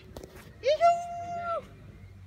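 A high, drawn-out call of "yoisho~" (heave-ho) on a swing: the pitch rises at first and then holds for about a second. A few sharp clinks come just before it.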